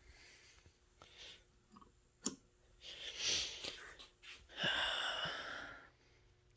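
A man breathing close to the microphone: two long, breathy exhales like sighs, about three and five seconds in, with a single sharp click just before the first.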